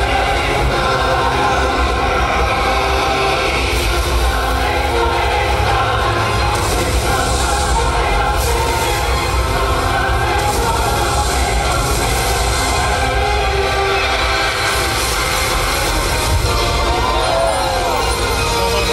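Loud dramatic show soundtrack music with deep bass and some choir-like singing, played for a water and light show; a short swooping tone rises and falls near the end.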